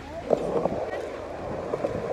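Busy skatepark ambience: background voices of a crowd with a few light knocks.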